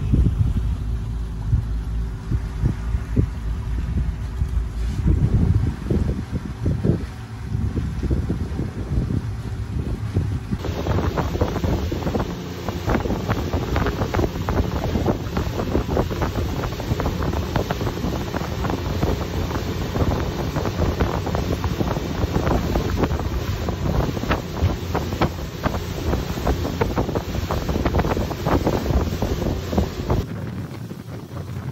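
Motorboat under way: a steady engine drone for the first ten seconds or so, then, after a change of shot, wind buffeting the microphone over the rush of water from the wake.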